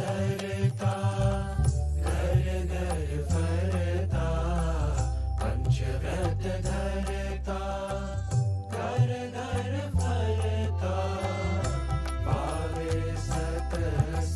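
A Gujarati devotional song sung by young male voices over instrumental backing with a steady low bass that moves from note to note every couple of seconds.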